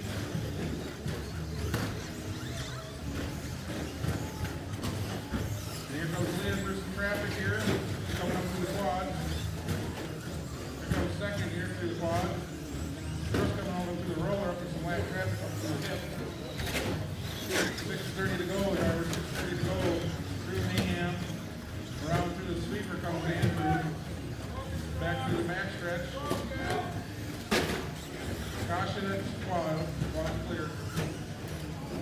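Radio-controlled short course trucks racing on an indoor carpet track: a steady low hum under indistinct voices, with several sharp knocks as the trucks land jumps and strike the track.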